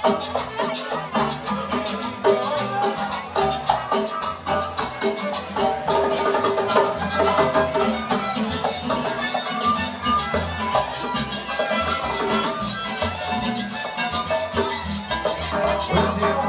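Live chanchona, a Salvadoran regional string band, playing dance music: melodic string lines over a deep plucked bass, with a quick, steady rattling percussion beat on top.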